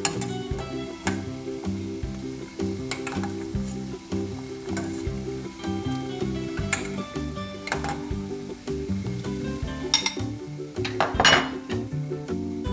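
Background music over stovetop kitchen sounds: a metal ladle clinking against a stainless steel pot and a bowl as boiled gnocchi are lifted out of boiling water, with a louder clatter and splash near the end.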